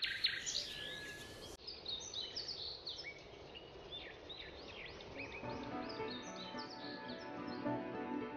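Rainforest ambience: several small birds giving many short chirps and whistles. Soft sustained music comes in about five seconds in.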